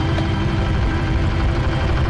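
Small fishing boat's engine running steadily, a low, even drone.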